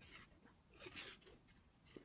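Near silence, with two faint, brief scrapes as a glue bottle's nozzle is drawn along folded cardstock.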